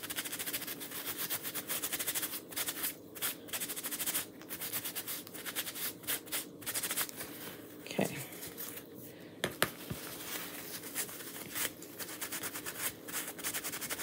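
Paper towel rubbing a small wooden cutout to buff off wax: irregular scratchy rustling with brief pauses, over a faint steady hum.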